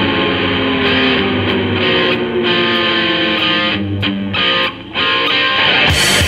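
Heavy metal band recording led by electric guitar over bass, with held and sliding notes. The music dips briefly about five seconds in, then comes back at full level.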